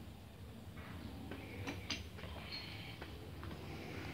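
A metal slotted skimmer ladle clinking and scraping against the inside of a large aluminium cauldron as it moves steaming stew: a few light, separate clicks and clinks, one ringing briefly about two seconds in.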